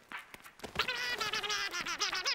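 A cartoon character's high, nonverbal vocal sound. It starts about two-thirds of a second in and carries on with a quick tremble in pitch.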